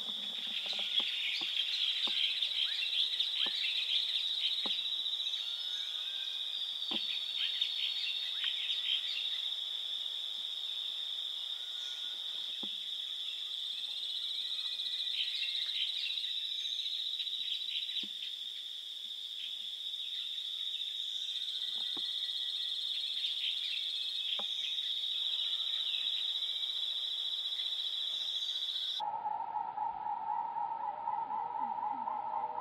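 Steady high-pitched insect drone in forest, with scattered faint chirps and clicks over it. Near the end the drone cuts off suddenly and a steady beep-like tone starts.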